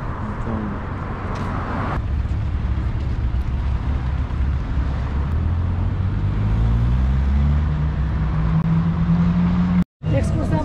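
Street traffic with a motor vehicle's engine running. Over the last few seconds its pitch rises steadily as it accelerates, then the sound cuts out briefly just before the end.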